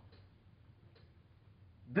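Near silence: room tone in a small room during a pause in a man's speech, with two faint ticks about a second apart; his voice starts again at the very end.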